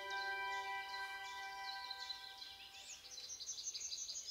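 A held music chord fades out over the first two seconds. Then small birds chirp faintly in the background.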